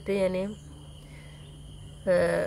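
Crickets chirring faintly and steadily in the background, a high thin trill that continues after a voice stops about half a second in.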